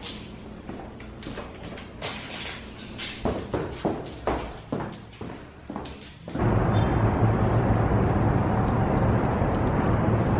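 Footsteps of a person and a dog going down carpeted stairs: a run of irregular knocks and thuds. About six seconds in it cuts suddenly to a louder, steady, low outdoor rumble.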